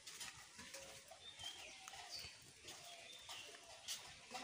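Faint bird calls: a few short, high chirps scattered over quiet outdoor background.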